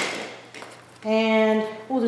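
Crinkling of a plastic-wrapped pack of scrapbook paper being lifted from a pile of craft supplies, dying away within the first half second. Then a woman's voice holds one drawn-out syllable for nearly a second.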